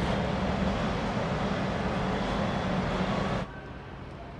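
Steady outdoor background noise, a low rumble with a hiss over it, cutting abruptly to a quieter background about three and a half seconds in.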